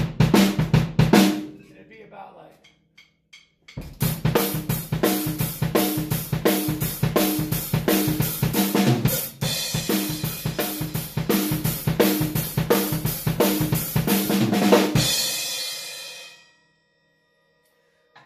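Acoustic drum kit played live: a short stretch of groove stops about a second in and dies away. After a brief pause comes a basic rock shuffle, with the bass drum shuffling under the hi-hat and snare, for about eleven seconds. It ends with the cymbals ringing out.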